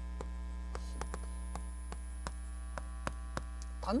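Chalk writing on a chalkboard: a string of short, irregular taps and clicks as the stick strikes the board. A steady low electrical hum runs underneath.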